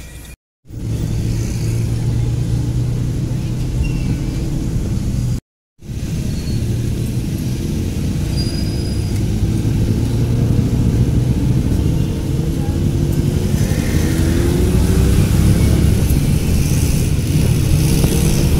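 Jeepney engine running, heard from inside the packed passenger cabin: a steady low drone that rises in pitch in the second half as the vehicle speeds up. The sound cuts out completely twice for a moment, about half a second in and at about five and a half seconds.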